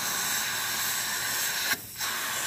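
Dental high-volume evacuator (HVE) suction running in a patient's mouth: a steady hiss that dips briefly near the end.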